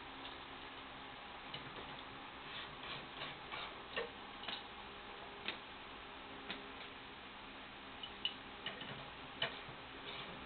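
Ratcheting wrench clicking in short, irregular runs and single clicks as it tightens the tension nut on a GS-X pinsetter's transport band spring assembly, over a steady background hiss.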